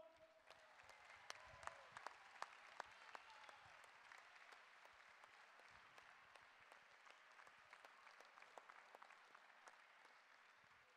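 Faint, distant crowd applause with scattered sharp claps, thinning out near the end.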